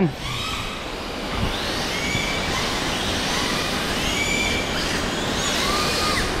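Several 1/10-scale electric RC drift cars running on a smooth concrete floor: their motors whine in short, overlapping rising and falling glides as the throttles are worked, over a steady hiss.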